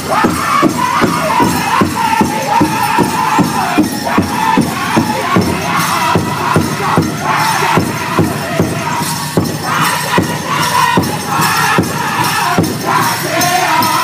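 Powwow drum group singing a men's traditional song: many voices in high, loud unison over a steady, fast beat on a shared big drum, about three strokes a second. The voices drop back about halfway through while the drum keeps going, then come in strongly again about ten seconds in.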